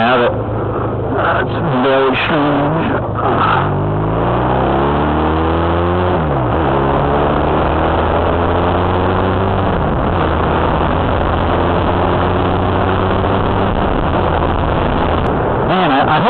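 Honda Rebel 250's twin-cylinder engine pulling away under acceleration, heard on board. Its pitch climbs, drops sharply at a gear change about six seconds in, and climbs again to a second shift about ten seconds in. It then runs at a nearly steady pitch.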